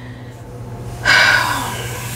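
A woman's sharp, loud breath about a second in, starting suddenly and fading away over the next second.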